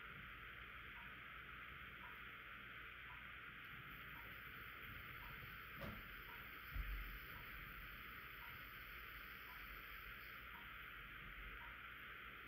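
Near silence: quiet room tone with a steady hiss and a faint tick about once a second, broken by a soft click just before six seconds and a low bump about a second later.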